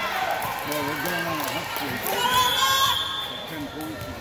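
Players and spectators calling out and shouting in a gymnasium during a volleyball rally, with a few sharp knocks of the ball being played.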